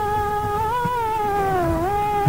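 Male Hindustani classical voice holding a long sung note, which lifts slightly and then slides down in pitch in the second half. Low drum strokes of the accompaniment sound beneath it.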